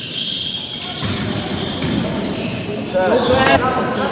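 Live basketball game sound in a reverberant sports hall: a basketball bouncing on the court amid players' movement. A player's shout comes near the end.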